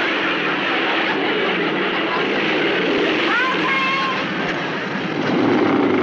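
Motorcycle engines running and revving, mixed with voices and studio-audience laughter; the din swells toward the end.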